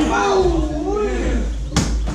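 A single sharp smack of a Muay Thai sparring blow landing, about three-quarters of the way through, over voices talking.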